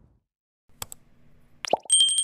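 Subscribe-button animation sound effects: a quick double mouse click a little under a second in, then a short pop, then a high bell ding starting just before the end.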